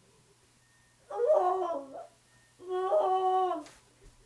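Two drawn-out wordless vocal tones, each about a second long and about half a second apart, with a faint steady low hum underneath.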